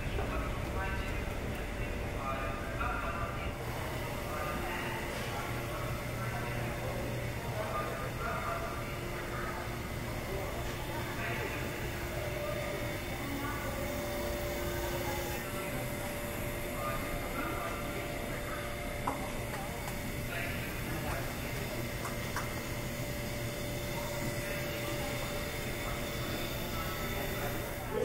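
Indoor train station concourse ambience: indistinct distant voices of passers-by over a steady low hum.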